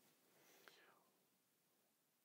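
Near silence: room tone, with one faint click about two thirds of a second in.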